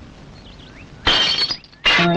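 A glass tumbler shattering: a sudden crash about a second in with a short glassy ring, then a second loud burst just before the end.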